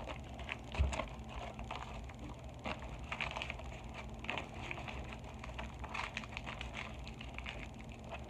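Small objects and papers being handled and moved about on a desk close to the microphone: a run of irregular clicks, light knocks and rustles.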